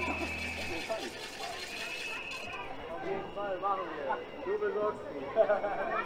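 Faint chatter of people talking in an open square. A thin steady high tone sounds on and off, and a low hum stops about a second in.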